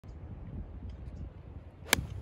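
A golf club strikes a golf ball off the tee: one sharp crack near the end, over a low wind rumble on the microphone.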